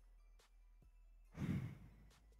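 A man's heavy, exasperated sigh into a close headset microphone, a single loud breathy exhale about a second and a half in.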